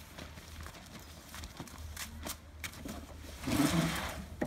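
Irregular knocks and clatter from plastic wheelie bins being handled, with a louder scraping rustle near the end as Christmas tree branches are pushed into a bin. A steady low hum from the inflatable costume's blower fan runs underneath.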